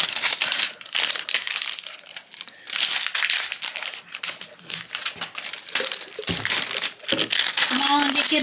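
Crinkly plastic shrink-wrap and a foil strip being peeled off a plastic toy canister and crumpled by hand, in irregular crackling bursts.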